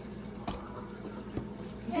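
Metal clasp of a Louis Vuitton trunk clutch clicking shut: one sharp click, then a fainter tap about a second later, over a steady low hum.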